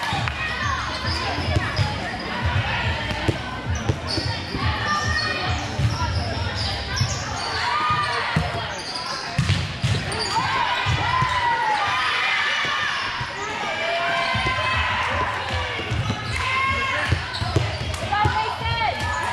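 Volleyball game in a large gym: girls' voices calling and shouting over the court, with scattered ball hits and bounces and sneaker squeaks, echoing in the hall.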